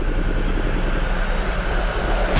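A steady rushing drone with a low rumble and a faint high tone that rises slowly.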